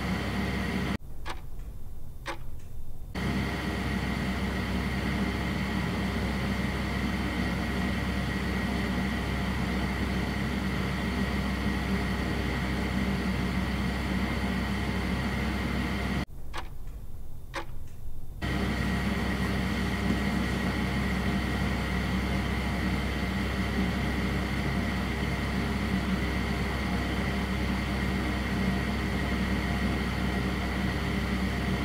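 A steady hum with hiss, like a running machine, broken twice by short dropouts, about a second in and about sixteen seconds in, where only a low hum and a few clicks remain.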